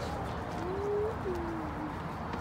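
A dove cooing: two soft, low coo notes about a second in, the first rising and the second falling away.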